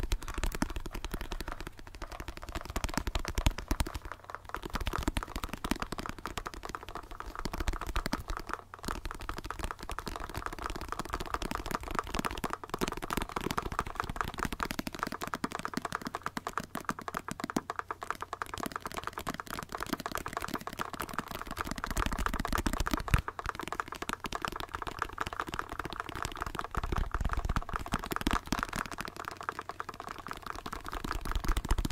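Fast fingertip tapping on a small black plastic device. Several tapping tracks are layered over each other into a dense, continuous clatter with no pauses.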